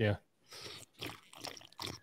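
A man slurping a drink from a stainless steel tumbler held close to the microphone, in four short slurps. It is a deliberate slurp to act out bad table manners.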